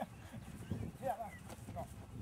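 Faint voices over a low, flickering rumble.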